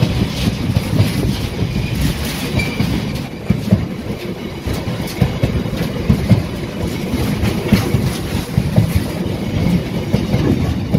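Freight wagons loaded with long lengths of rail rolling past at close range: a steady rumble of wheels on track, broken by frequent irregular clacks and knocks from the wheels.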